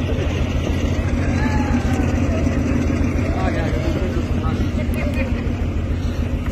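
A steady low engine-like drone, with faint voices of people talking in the background.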